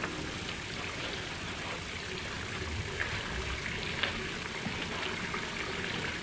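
A steady, even rushing noise like running water, with a few soft clicks about three and four seconds in.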